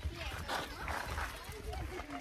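Faint, distant voices over a steady low rumble on the microphone.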